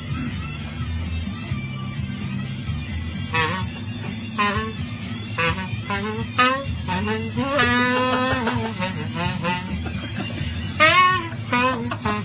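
A man imitating a saxophone with his voice: short sax-like phrases starting about three seconds in, with a longer wavering held note in the middle, over background music with guitar.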